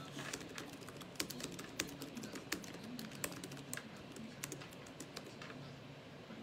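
Typing on a laptop keyboard: irregular soft key clicks, with a few louder taps.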